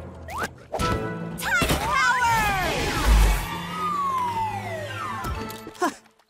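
Cartoon soundtrack music with slapstick sound effects: sharp hits, gliding whistle-like tones that rise and then fall, and a heavy low thud about three seconds in, as of a body hitting the ground.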